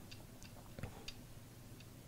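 About half a dozen faint, irregularly spaced clicks of a computer mouse's scroll wheel as a document is scrolled.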